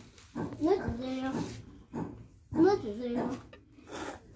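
Young children's voices: two drawn-out vocal sounds without clear words, each about a second long, with short quiet gaps around them.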